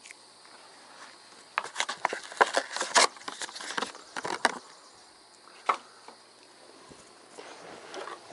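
Plastic packaging being pulled and torn open by gloved hands: a run of sharp crinkles and crackles for a few seconds in the middle, then one more a little later, over a faint steady insect hum.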